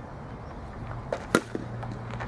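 A softball bat striking a pitched softball: one sharp crack about a second and a third in, with a couple of fainter knocks just before and after it, over a steady low background hum.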